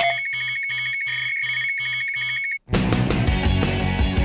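Electronic alarm beeping, about two beeps a second over a steady high tone, that cuts off suddenly under three seconds in. Rock music with electric guitar starts straight after.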